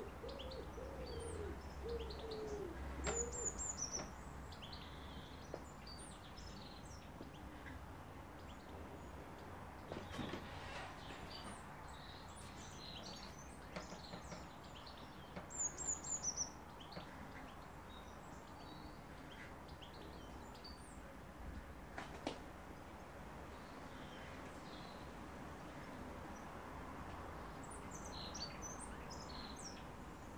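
Faint birdsong: a run of low cooing notes in the first few seconds, and short high chirps scattered throughout, loudest about halfway through. A couple of soft clicks in between.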